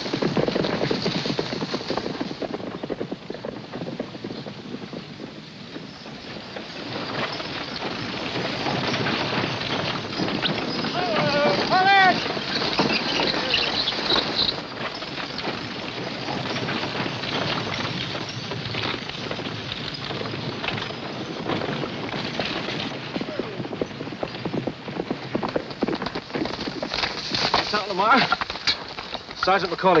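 Many horses' hooves and a moving wagon train making a dense, continuous clatter. A horse whinnies once, briefly, about twelve seconds in, and a man starts calling out just before the end.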